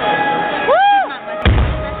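Live band on stage: held instrument notes, then a pitched note that slides up and back down, and about a second and a half in a single loud booming hit with a low ringing tail as the band comes in.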